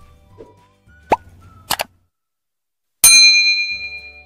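Animation sound effects over faint background music: a short water-drop plop about a second in, a quick double click soon after, and a bright bell-like ding at about three seconds that rings out. The click and ding are the usual subscribe-button and notification-bell effects.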